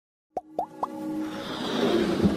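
Sound design of an animated logo intro: three quick plops, each rising in pitch, about a quarter second apart, then a swelling whoosh that builds up.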